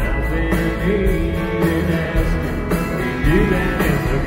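Live country music: a band with acoustic guitar and fiddle playing.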